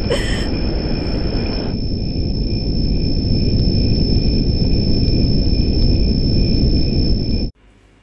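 Loud, low rumbling noise with a steady high-pitched whine over it, from a background sound track laid under the scene. It cuts off suddenly near the end.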